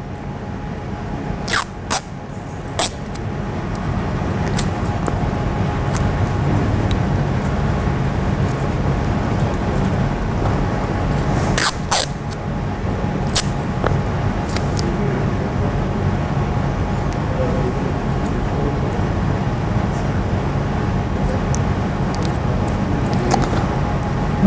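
A steady low hum that builds up over the first few seconds and then holds. Over it come a few short, sharp sounds of athletic tape being torn and pressed on around a finger joint: three near the start and two more about halfway.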